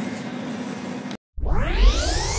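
A steady room hum for about a second, a brief dropout, then a synthesized transition sweep: a stack of tones rising in pitch over a deep bass rumble.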